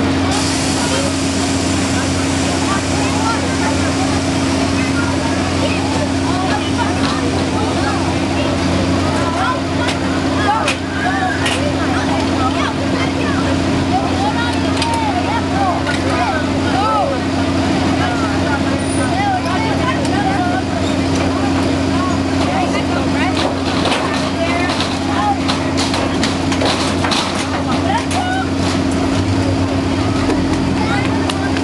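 A steady low hum of fairground ride machinery, with a babble of many voices over it. Sharp clicks and knocks become more frequent in the last third.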